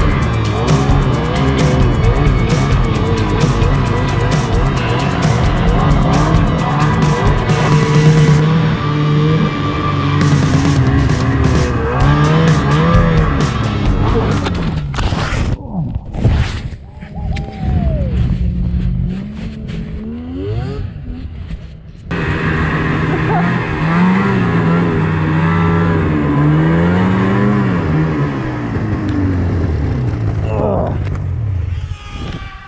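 Snowmobile engines revving up and down, with background music under them. The sound thins out and drops for several seconds in the middle, then comes back abruptly.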